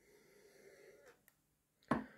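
A drinking glass handled on a wooden tabletop: faint handling noise, then one sharp knock near the end.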